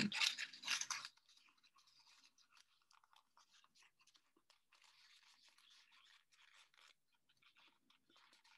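Folded construction paper and a cardboard tube being handled, with faint irregular crackling and rustling as the paper strip is pushed and tucked into the tube. It is louder at the start, then faint.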